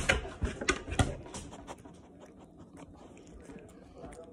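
Chihuahua eating soft food from a hand, with a quick run of wet chewing clicks and lip smacks over the first couple of seconds, then quieter. It opens with a sharp knock, the loudest sound.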